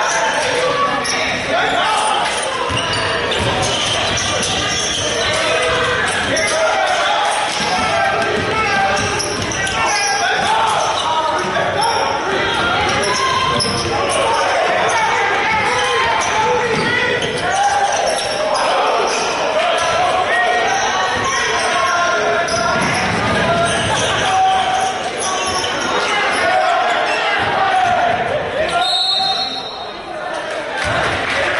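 Basketball dribbled and bouncing on a hardwood gym court during play, mixed with players' voices echoing in the large gym.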